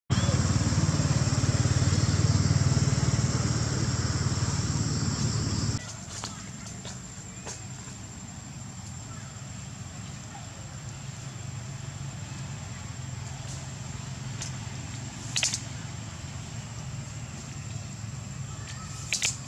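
Outdoor background sound: a loud low rumble for about the first six seconds, cut off abruptly, then a much quieter background with a steady high-pitched whine, a few faint clicks and a short high call near the end.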